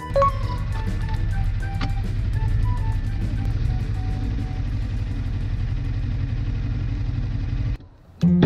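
Suzuki GSX250R's parallel-twin engine idling steadily while the bike stands still, with soft background music over it. The engine sound cuts off suddenly near the end.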